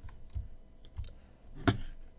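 Clicks of a Logitech wireless mouse: a few light clicks and soft thumps, with one sharper click near the end.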